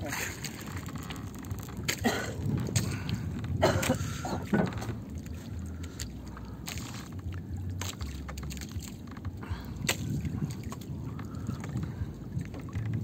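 Water sloshing and lapping around a jukung outrigger fishing boat over a low steady rumble, with scattered light knocks.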